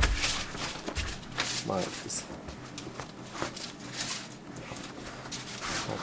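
Pliers cutting the metal hog rings that fasten a car seat's cover to its foam cushion: scattered short clicks and snips amid the rustle of the cover being pulled back.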